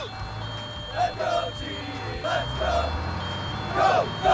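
Electronic beeping: a high, steady tone switching on and off about once a second, like a vehicle's reversing alarm, over a steady low hum, with short voice-like sounds between the beeps.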